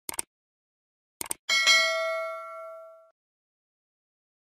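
Subscribe-button sound effect: a pair of quick mouse clicks, another pair about a second later, then a bright notification-bell ding that rings out and fades over about a second and a half.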